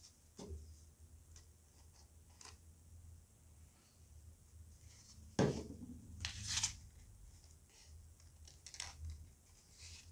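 Faint rubbing and light clicks of EVA foam petals being handled and fitted together into a fan, with a sharper knock about five and a half seconds in and a short rustle just after it.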